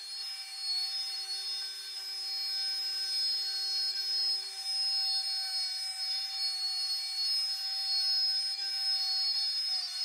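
AltMill CNC router's spindle running at high speed while it cuts a wood sheet, giving a steady high whine made of several fixed tones. A lower tone under the whine drops out about halfway through.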